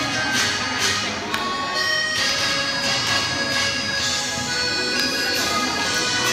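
Instrumental intro of a karaoke backing track for a Chinese pop song: a reedy lead melody with long held notes over a steady beat, played over loudspeakers.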